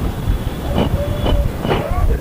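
Low, rumbling wind noise buffeting the microphone of an outdoor recording, with faint fragments of a man's voice in the middle.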